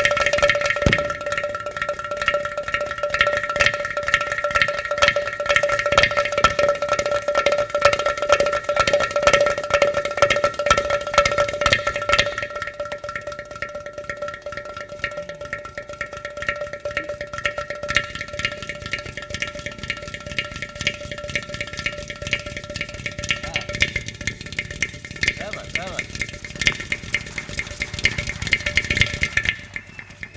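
Ghatam, a clay pot drum, played solo with a fast, dense run of finger and palm strokes over a steady drone; the playing is louder in the first half and softer after.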